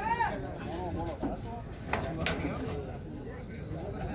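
Faint voices of people talking in the background over a low outdoor hum, with two short sharp clicks about two seconds in.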